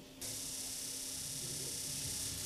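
Remotely lit gas fireplace starting up: an even, high-pitched hiss of gas flowing to the burner, beginning a moment after the button press.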